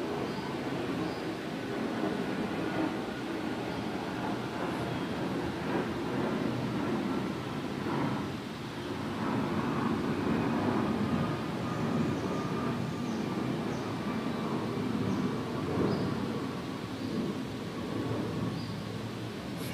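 Steady low rumble of background noise with no speech, with a few faint short high chirps now and then.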